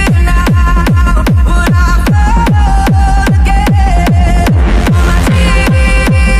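Techno track: a steady four-on-the-floor kick drum, about two beats a second, each kick dropping quickly in pitch, under held synth chords. About halfway through, a sustained synth note slides down in pitch.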